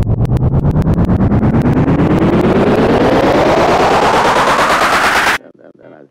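Electronic trap build-up: a rapid drum roll, the hits coming closer together, under a synth riser that sweeps steadily upward in pitch. It cuts off suddenly shortly before the end.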